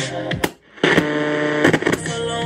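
Boombox radio being switched between bands: the sound cuts out briefly about half a second in, then static with crackles and fragments of station sound comes through the speakers.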